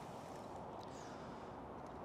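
Faint steady background noise with a couple of faint ticks around the middle.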